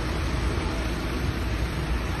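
Steady road traffic noise on a wet street, with a deep rumble underneath and no distinct events.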